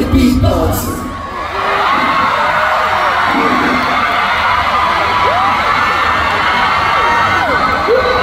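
The song's backing track, with its heavy bass, cuts off about a second in. A large concert audience then cheers and screams steadily, with many high voices whooping over one another.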